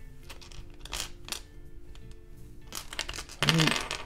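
Plastic LEGO bricks clicking and clattering as they are handled and pressed together, with a couple of sharp clicks about a second in and a quick run of clicks near the end, over faint background music with held tones.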